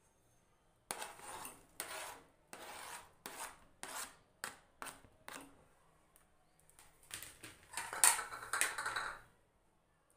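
A metal spoon scraping and clinking against a steel bowl while chopped apples are stirred into a creamy fruit-salad base, in a run of short strokes about a second in. A louder, busier spell of scraping follows near the end.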